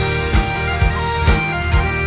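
Celtic rock band playing a lively instrumental tune: a high wind-instrument melody of held notes over bass and a steady drum beat of about two hits a second.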